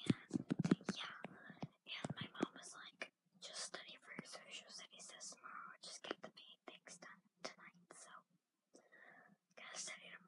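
A girl whispering in a steady run of hushed, breathy speech, with many hissing consonants.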